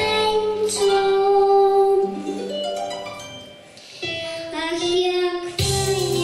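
A young girl singing a song into a microphone over instrumental accompaniment, holding long notes; the music softens for a moment before the next line comes in about four seconds in.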